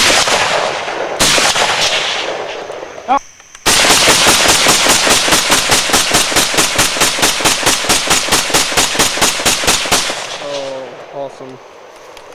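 Gunfire: two loud reports, each ringing on and fading over a second or two, then after a short break a rapid, even string of shots, several a second, that stops about ten seconds in.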